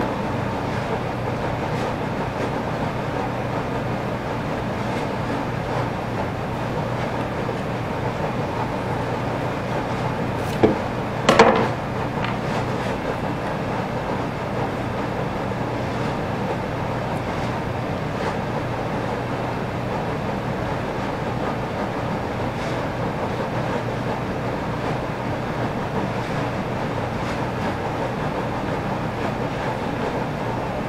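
Steady background noise with a low hum throughout, and a couple of short sharp clicks about ten and eleven seconds in.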